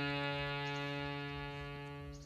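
Harmonium holding one sustained reed note that slowly fades.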